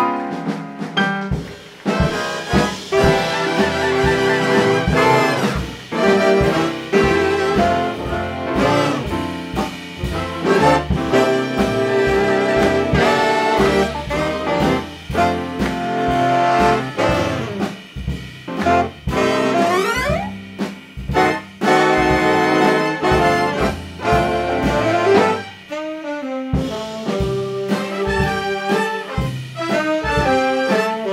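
Big band playing an instrumental chorus of a swing arrangement: brass and saxophone sections over piano, upright bass and drums.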